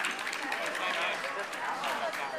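Indistinct chatter of several people in a large hall, voices overlapping without clear words.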